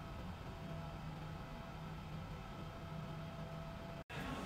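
Quiet steady room tone: a low hum with two faint, steady high tones and no distinct event.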